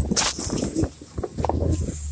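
Plastic sled towed fast through deep snow: irregular hissing and scraping as snow sprays over the phone's microphone and the sled, over a low steady drone, with a brief lull about a second in.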